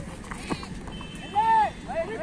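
A single high-pitched shout from a player on the field, held for about a third of a second about one and a half seconds in, over open-air background noise.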